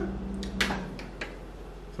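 Eating at the table: a few short clicks and taps of utensils and snail shells in the first second and a half, over a low steady hum.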